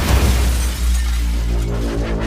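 A shattering crash at the start, fading over about a second, then cinematic trailer music with a deep bass comes in.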